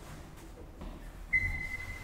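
Traction elevator's electronic arrival signal: a single high, steady beep that starts sharply just over a second in and fades away over about a second.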